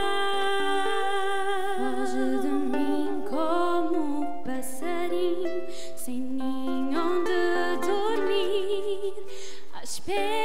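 Live folk band playing a slow ballad: a held, wavering melody line over small plucked string instruments such as the Madeiran braguinha and rajão, changing note every second or so.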